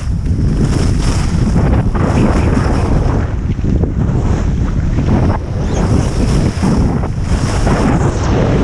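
Loud wind buffeting on a GoPro's microphone during a fast ski descent, mixed with the rushing scrape of skis on packed snow, dipping briefly several times.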